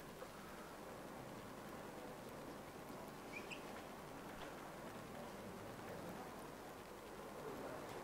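Quiet room tone: a faint steady hiss, with a brief faint chirp about three and a half seconds in and a few faint ticks.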